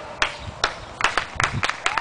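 Hands clapping close by, a quick, irregular run of sharp claps, with a short rising voice near the end.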